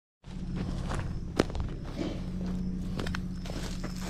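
Footsteps over dry leaves and twigs on bare ground, with one sharp snap about a second and a half in, over a steady low hum.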